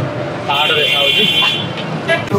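A vehicle horn sounds once, a steady high tone held for about a second, over the voices and traffic noise of a busy street.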